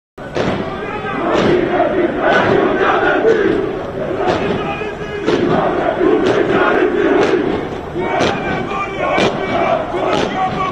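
Greek Air Force cadets chanting slogans in unison as they march, many men's voices shouting together in a steady rhythm with a sharp beat about once a second.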